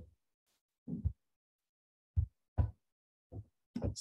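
Five short, soft thumps spaced unevenly, the kind made by keys or a mouse being pressed at a computer, with dead silence between them.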